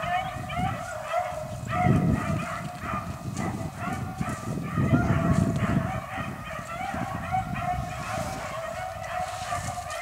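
A pack of rabbit-hunting dogs baying and barking steadily as they run a jumped rabbit. Their voices overlap without a break, over a low rumble that swells around two and five seconds in.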